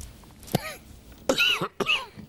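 A man coughing in a fit: a short cough about half a second in, then two harder coughs close together near the end.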